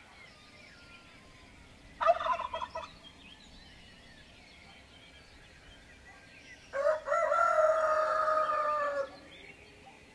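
Two loud bird calls over faint chirping from songbirds: a short rapid rattling call about two seconds in, and a longer held call from about seven to nine seconds that falls slightly at its end.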